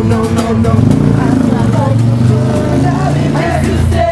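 A motor vehicle engine running close by, with people talking over it.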